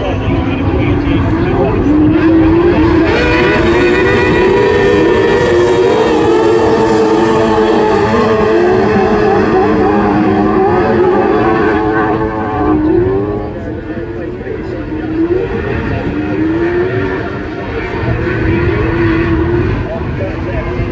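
Pack of F600 autograss cars with 600cc motorcycle engines racing, the engines revving high and climbing in pitch again and again through gear changes. Loudest in the first half, quieter after about twelve seconds, building again near the end.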